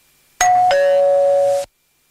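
Two-note ding-dong doorbell chime: a short higher note, then a longer lower one that cuts off suddenly.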